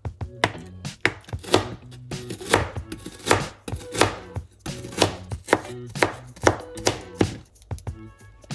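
Kitchen knife cutting through a block of tofu and then slicing garlic cloves, the blade knocking on the cutting board with each cut, about twice a second at an uneven pace.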